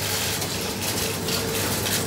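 A pause between spoken sentences, filled with steady noise and faint rapid mechanical clicking.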